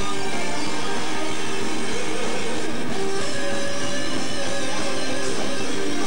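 Heavy metal band playing live: electric guitars and keyboards over a drum kit, at a steady loud level.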